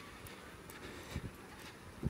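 Grey horse trotting over ground poles on arena sand: faint, soft hoofbeats, with a thud about a second in.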